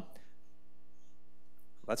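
Steady electrical mains hum, a buzz made of many even overtones, from the sound or recording system. A man's voice starts right at the end.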